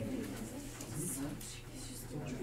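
Indistinct low voices murmuring in the background, with no clear words.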